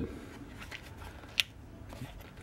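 Quiet handling of a stitched leather belt pouch in the hands, with one short sharp click a little past halfway.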